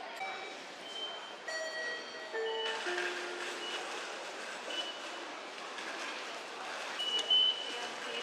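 Station concourse ambience of a moving crowd, with a short chime of notes stepping downward about two seconds in. Brief high electronic beeps of IC-card ticket gates sound now and then, loudest near the end.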